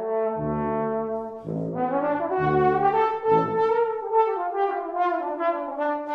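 Trombone and tuba playing together. Separate low tuba notes sound in the first half under a held trombone line, then the trombone slides smoothly down in pitch over the last few seconds.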